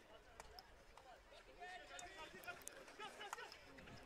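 Faint sound from a field hockey pitch: distant players shouting to each other, with a few sharp taps of sticks on the ball.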